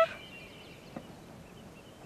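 A high held note stops abruptly at the start. After it comes faint background hiss with a single soft click about a second in.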